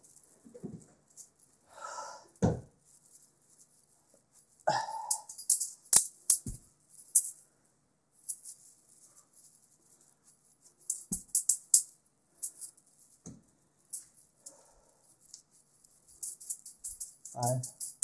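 Wire-wrapped juggling balls rattling in quick runs of crisp clicks as they are thrown and caught in one hand, each run lasting a few seconds before stopping. A few dull thumps fall in the pauses between runs.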